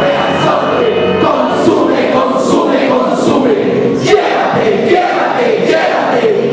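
A group of voices chanting a recitation together in unison, led by a man's amplified voice through a microphone. The chant is rhythmic, with a sharp hissing 's' sound about once a second.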